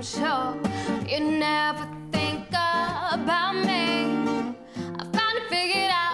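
A woman singing live to an acoustic guitar, her held notes wavering over the guitar's steady chords.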